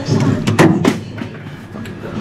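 Plastic soda bottles knocking and clattering against each other and the cooler's wire shelf as a hand pulls one from the back of a drinks cooler, a few sharp knocks close together, then another single knock.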